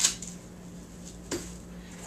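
Two short clicks from handling a bag's strap clips and webbing, one right at the start and one about 1.3 seconds in, over a low steady hum.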